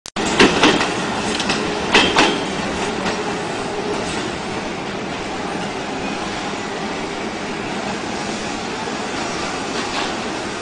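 A train running, heard as a steady noise, with a few sharp knocks in the first two seconds.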